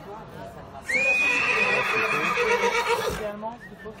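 A horse whinnying once, one long call of over two seconds beginning about a second in: it rises sharply at the start, then holds high and steady.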